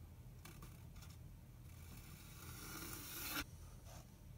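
Faint scraping of a flat wooden panel being handled and slid into place over the top edges of a small wooden box: two short scratches, then a longer scrape that builds for about two seconds and stops abruptly.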